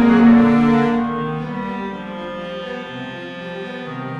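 Classical chamber-ensemble music, with bowed strings holding long, sustained low notes. Loudest in the first second, then it softens.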